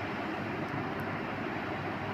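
Steady background noise with a low hum, from a running machine.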